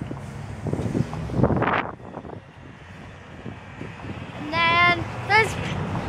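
Outdoor parking-lot background noise with a rush of noise swelling about one and a half seconds in, then a child's high voice, a short call or laugh, about four and a half seconds in.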